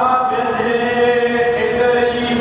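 A voice chanting in long, held notes that change pitch only now and then.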